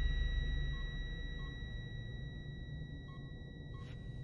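A hushed film soundtrack: a low rumble fading away under a faint, steady high tone, with a few short, soft electronic beeps from control-room monitors.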